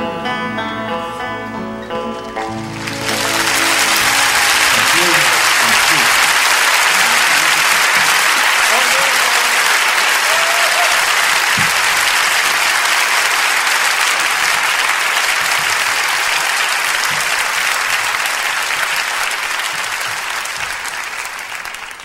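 The last plucked-string notes of a live folk song ring out, then a large audience breaks into loud, sustained applause, with a few voices calling out in it. The applause fades away near the end.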